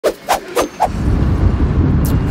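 Four quick short sounds in the first second, then wind buffeting the microphone with a steady low rumble from about a second in.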